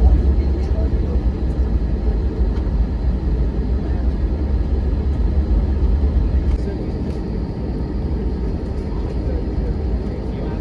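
Inside the cabin of an Airbus A320-family jet taxiing: a steady, heavy low rumble of engines and rolling wheels, easing slightly a little after six seconds in.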